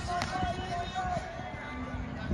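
Outdoor football practice field ambience: voices calling out across the field over music, with low thuds underneath.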